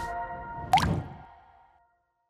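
Closing logo jingle: held musical notes ring out and decay, with one short rising water-drop sound effect just under a second in, and the whole fades away.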